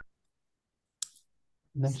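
Two short, faint clicks about a second apart, then a man's voice says 'next'.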